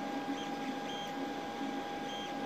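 Creality CR-X 3D printer running: a steady hum with a constant tone, and brief high-pitched tones that come and go several times as it moves.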